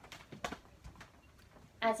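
A few light, irregular taps and knocks of a dancer's flat shoes on the floor as she steps and kicks, with a word of speech starting just at the end.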